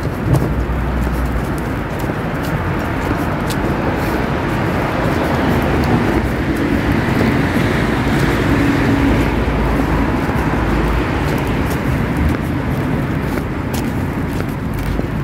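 City street traffic noise, with a motor vehicle passing that swells in the middle and then fades.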